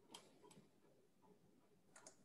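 Near silence on a video call, broken by a few faint clicks: one just after the start, a pair about half a second in, and one near the end.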